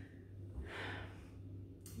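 A woman's faint breathing after a dance kick: a soft breath out about halfway through and a quick breath in near the end. A low steady hum runs underneath.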